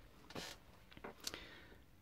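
Near silence: quiet room tone with a faint hiss about a third of a second in and a single faint click past the middle.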